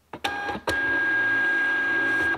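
Thermal label printer printing and feeding out a postage label: a few light clicks, a knock just over half a second in, then a steady motor whine with one high tone as the label advances.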